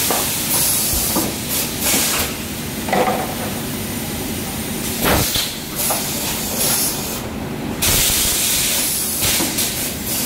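PET bottle blow moulding machine blowing and venting compressed air: repeated sharp hisses of air, the longest about a second near the end, with a few clunks from its pneumatic cylinders.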